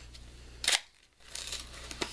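Handling and opening the packaging of a lip gloss tube: a short sharp rustle about two-thirds of a second in, then a longer rustle near the end.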